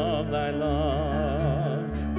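A hymn sung with a wide vibrato over grand piano and electric bass guitar accompaniment, the bass holding low notes.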